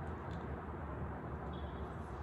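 A steady low background rumble, with one faint crunch about a third of a second in as a crispy baked potato skin is bitten into.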